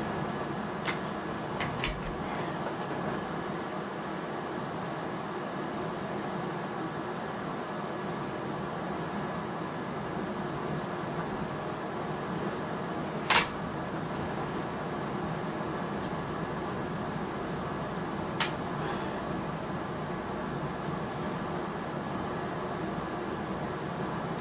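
A steady mechanical hum throughout, broken by a few sharp clicks from handling a break-barrel air rifle: three close together in the first two seconds, a louder one about 13 seconds in, and another about 18 seconds in.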